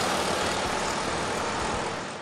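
Road traffic: a vehicle passing close by, a rush of tyre and engine noise that fades slowly.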